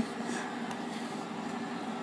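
Quiet room background: a faint steady hum with no distinct sounds.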